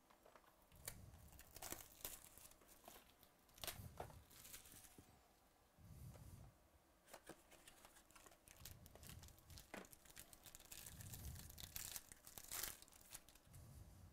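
Faint crinkling and tearing of plastic shrink-wrap and packaging as a sealed trading-card box is unwrapped and opened by hand, with scattered sharp clicks and rustles.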